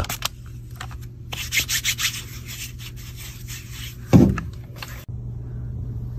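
A trigger spray bottle spritzing onto a palm, then hands rubbing together in a run of short strokes. A single dull thump comes about four seconds in, over a steady low hum.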